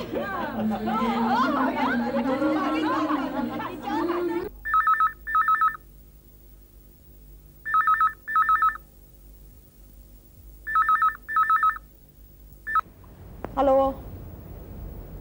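People laughing and talking, then a landline desk telephone with an electronic ringer rings in double rings: three warbling two-tone pairs about three seconds apart. The fourth ring is cut short as the phone is answered.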